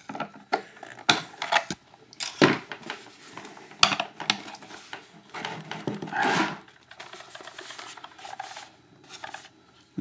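Irregular clicks, knocks and short scrapes of hand tools and plastic model parts being handled and put down on a wooden workbench.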